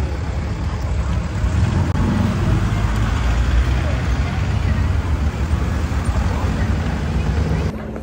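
Street noise outdoors: a loud, steady low rumble, like traffic or wind on the microphone, with faint voices in the background.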